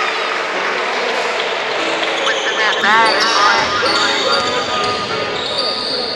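Live game sound from a basketball court: a basketball bouncing on the wooden floor during play, with players' voices calling out and short high squeaks echoing in the hall.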